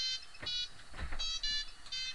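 Phone ringtone: a run of short, high electronic beeps, about two a second.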